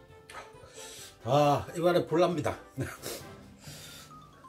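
A man eating, with three short wordless voiced sounds about halfway through, each rising and falling in pitch, amid brief chewing noises.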